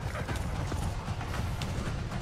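Horse hooves galloping on grass: a quick, uneven run of hoofbeats over a low rumble, from a film trailer's sound mix.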